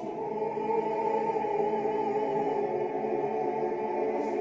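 Choral music: voices holding long, overlapping notes in a slow, steady chord.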